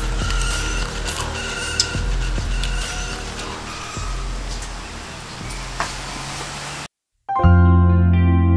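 Steady background noise with a low hum, a few faint clicks and intermittent high steady tones. It cuts off abruptly near the end, and after a brief silence soft instrumental music with sustained notes begins.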